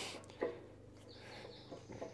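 Faint clicks and a light scrape of metal parts being handled as the ABS sensor and its bearing are worked onto a motorcycle's front axle, a tight fit: one click about half a second in, a brief high scrape in the middle, and another small click near the end.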